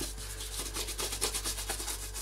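Bristle brush scrubbing leather grease into an old leather jackboot in quick, repeated strokes.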